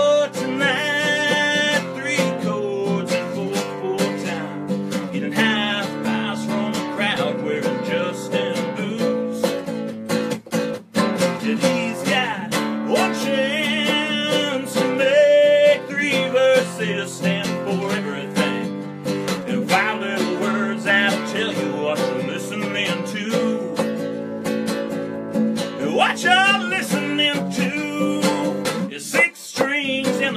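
Acoustic guitar strummed steadily under a man's singing voice, a live solo country song, with a brief drop in loudness around eleven seconds in.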